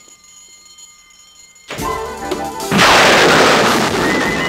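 Quiet for the first second and a half, then dramatic TV score music comes in, and about a second later a loud explosion sound effect hits. It is a sudden burst of noise that fades slowly, the flash-bang effect of a superhero's spinning transformation.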